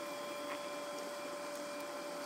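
Steady electrical hum with a thin high whine over a hiss, the room tone of a lab full of running equipment. There is a faint click about half a second in.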